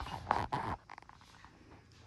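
Brief rustling of the phone being handled and turned, a few short scuffs in the first second, then quiet room with faint television sound.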